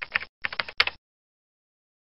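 Computer keyboard typing, rapid key clicks in two short runs that stop about a second in.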